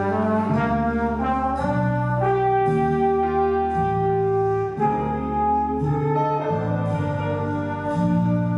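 Jazz big band playing a slow ballad: the brass section holds sustained chords that change every second or so, with one long held chord in the middle.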